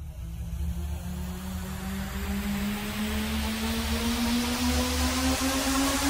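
Dark electronic track in a build-up: a synth tone rising slowly in pitch and a swelling noise sweep over a pulsing sub-bass, growing steadily louder.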